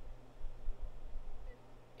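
Low rumble on the microphone with a steady low electrical hum beneath it: the room's background between bits of speech.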